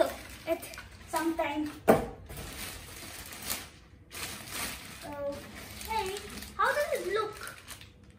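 Short snatches of a boy's voice, with a sharp knock about two seconds in and rustling as polystyrene packing and a plastic bag are handled around a boxed laser printer.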